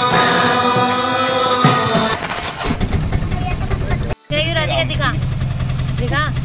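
Devotional music for about the first two seconds, then a vehicle engine running with a steady low rumble. High voices come over the engine in the second half, after a brief dropout about four seconds in.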